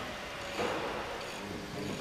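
Film soundtrack between lines of dialogue: a steady noisy background that swells about half a second in, with faint held music notes underneath.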